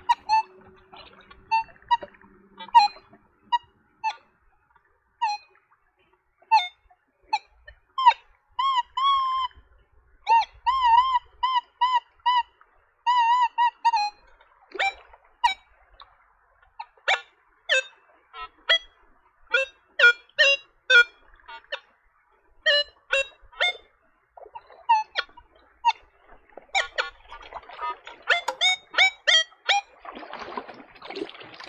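Nokta Legend metal detector's speaker giving a long series of short target beeps as its coil sweeps the stream bed, with a run of longer wavering, warbling tones about a third of the way through.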